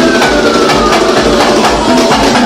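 Live pagodão band playing an instrumental groove: electric guitar, drums and percussion over a steady pulsing bass, with a high note gliding down through the first second.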